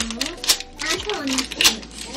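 A knife cutting open a plastic cheese packet: a few sharp clicks and crinkles of the plastic, with a child's voice alongside.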